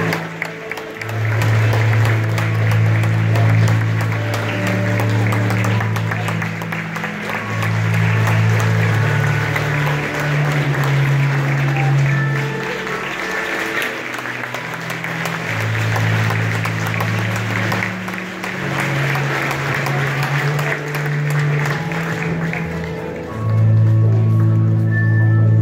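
Music with long held low notes that change every second or two, under steady audience applause.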